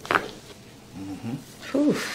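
A brief sharp sound right at the start, then a person's short wordless vocal sounds during a chiropractic neck adjustment: a low hum about a second in and a falling groan near the end.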